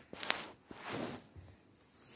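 Handling noise of a smartphone being carried: two brief rustles of the phone brushing against the microphone, the first with a small click.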